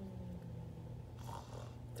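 Soft pretend snoring from a person miming sleep, over a steady low hum.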